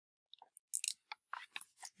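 Handling of a hardcover picture book as it is closed and lowered: a quick string of short, soft crackles and rustles from the pages and cover, running for about a second and a half.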